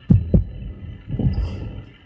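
Two quick low thumps about a quarter second apart, then a softer low rumble a little after a second in.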